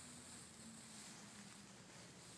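Near silence: room tone, with a faint steady low hum.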